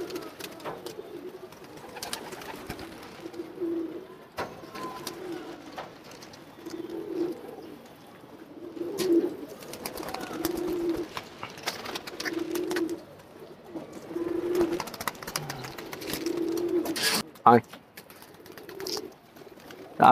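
Domestic pigeons cooing, low soft coos repeating every second or two. A single sharp knock sounds late on.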